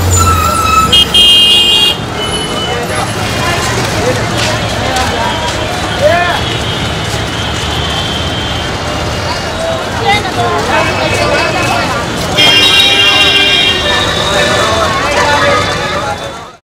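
Busy street-market ambience: a crowd of voices chattering over road traffic. Vehicle horns honk briefly about a second in, and again for a couple of seconds near the end.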